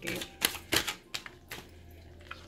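A tarot deck being handled and shuffled: a series of sharp, separate card clicks and snaps, about five in two seconds.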